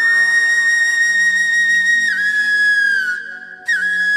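Background music: a flute holding a long high note over a steady low drone. The note steps down about two seconds in, breaks off briefly near the end, then comes back with quick ornamented turns.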